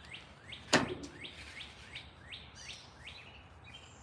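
A songbird singing a run of short down-slurred whistled notes, about three a second, over faint outdoor background. A single sharp knock, the loudest sound, comes just under a second in.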